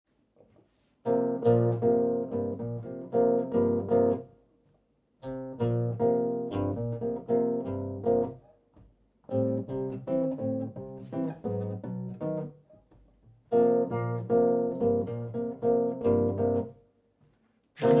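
Solo nylon-string silent guitar, amplified, playing four short chordal jazz phrases of about three seconds each, with brief silent pauses between them. A louder, fuller passage begins just at the end.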